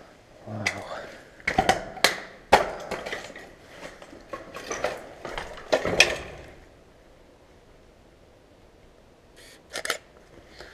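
Footsteps crunching over broken wood and rubble, with several sharp cracks of splintering wood and debris in the first six seconds, then going quiet.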